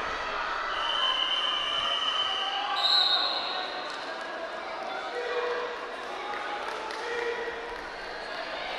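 Shouting voices echo in a large sports hall, and a long shrill whistle sounds from about one second in to about three seconds.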